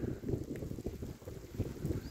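Wind buffeting a phone's microphone: an uneven, gusting low rumble.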